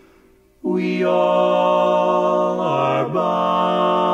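Barbershop quartet of four men's voices singing a cappella. After a brief near-silent pause, the voices come in together on a held chord about half a second in, move to a new chord near the three-second mark, and hold it.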